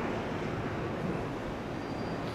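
Steady outdoor background noise of a city park: an even, featureless rush with no distinct events.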